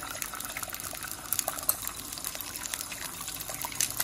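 An egg frying in hot oil in a nonstick pan: steady sizzling with scattered small crackles and pops.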